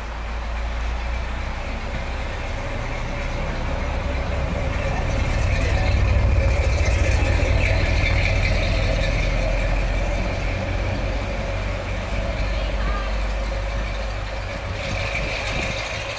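Pickup truck loaded with hay bales driving slowly across the covered bridge's wooden plank deck, its engine and tyre rumble rising to loudest as it passes about six to eight seconds in, then fading as it drives away.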